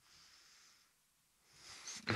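Near silence, with a faint breath-like hiss just before the end.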